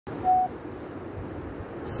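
A short electronic beep, one steady tone lasting about a quarter of a second, right at the start, followed by low, steady background noise.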